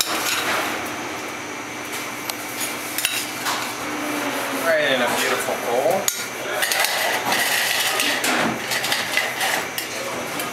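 Metal spoon clinking and scraping against a stainless steel saucepan as soup is spooned and tipped out into a bowl, with several sharp metallic knocks.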